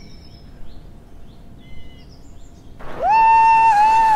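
Faint bird chirps, then about three seconds in a loud, long, held cry from a person's voice that swoops up, holds one pitch and slides down at the end.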